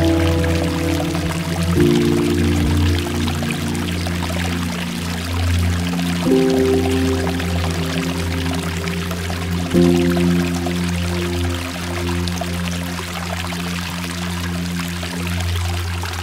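Soft ambient music of slow, held chords that change every few seconds, over steady water pouring and trickling down a rock face.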